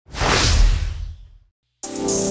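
Whoosh sound effect with a deep boom under it, swelling quickly and fading away over about a second and a half. After a brief silence, electronic music starts just before the end.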